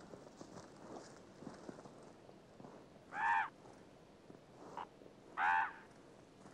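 Two short, loud animal calls about two seconds apart, each arching up and then down in pitch, with a fainter brief call between them, over low background noise.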